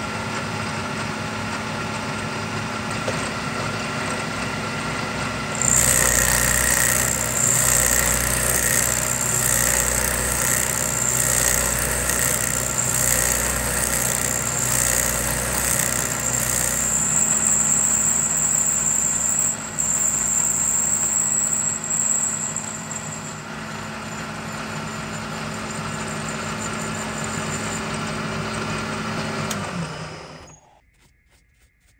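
Milling machine spindle running, then an end mill cutting a keyway into a threaded steel jack screw from about six seconds in. The cut gives a high-pitched whine with pulses about once a second, and it quietens in the second half. The spindle stops at the very end.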